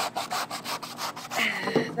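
Chef's knife sawing back and forth through the fibrous husk of a coconut: a fast, even run of strokes that stops about one and a half seconds in.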